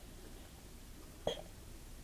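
Faint handling of small plastic LEGO pieces, with one short sharp sound a little past halfway.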